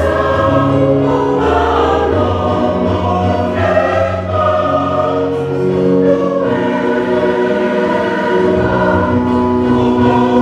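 A congregation of many voices singing a hymn together, holding long sustained notes.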